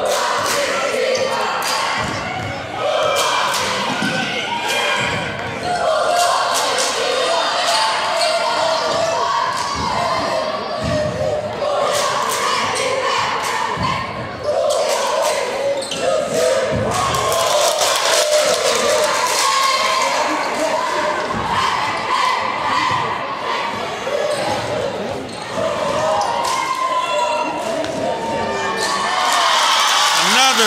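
A basketball dribbled and bouncing on a hardwood gym floor during play, with the voices of a crowd echoing in a large gym.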